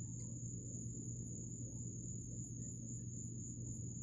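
Quiet steady background: a low hum with a thin, continuous high-pitched tone above it. Nothing starts or stops.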